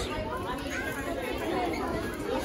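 Background chatter of other shoppers in a busy shop, several voices talking at once at a lower level than close speech.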